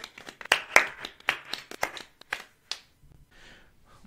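Scattered hand claps, a dozen or so at an irregular pace, dying away after about three seconds.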